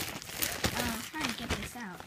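Clear plastic bag crinkling and rustling in quick, irregular crackles as it is handled and opened, with a child's voice running under it.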